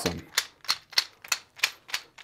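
A two-piece hard plastic glide bait, the 6th Sense Draw, clicking sharply about three times a second as its jointed body is worked back and forth in the hands.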